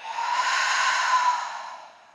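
A woman's long exhale through the open mouth, a deep sigh-like breath out that fades away near the end. It is the release of a deep relaxation breath.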